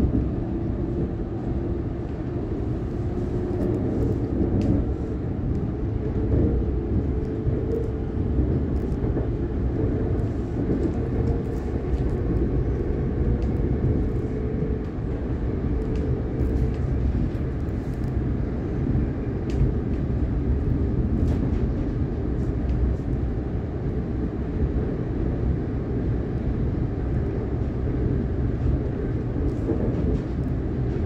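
Siemens Nexas electric suburban train heard from inside the carriage while running at speed: a steady low rumble of wheels on the rails. A faint hum of a few held tones in the first several seconds fades away, and light clicks are scattered throughout.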